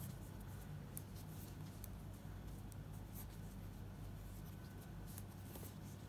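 Metal knitting needles working fabric-strip yarn: faint, irregular small clicks of the needles with scratchy rubbing of the yarn as stitches are made.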